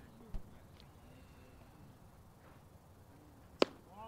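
Quiet ballpark ambience between pitches, with a dull low thump about a third of a second in and a single sharp crack near the end.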